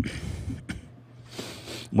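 A person's short cough close to a microphone, then a breath in just before speaking.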